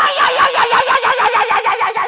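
A woman's high-pitched voice shouting a fast, even run of syllables, about seven a second, without a pause.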